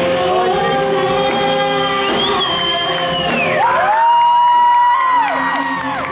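Live rock band with a female lead singer, electric guitar, bass and drums. She holds long sung notes, the longest about four seconds in, ending in a downward slide.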